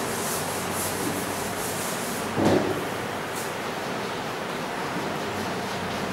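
A blackboard being wiped with a duster: a steady scrubbing rub across the board, with one brief louder knock about two and a half seconds in.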